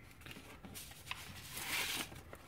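Paper rustling and crinkling as sheets are handled, with a few small ticks, growing to a louder rustle near the end.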